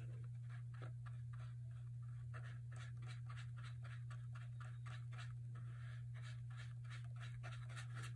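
Paintbrush stroking back and forth across paper, blending two wet colours together: a quick run of faint scratchy strokes, about three a second, over a steady low hum.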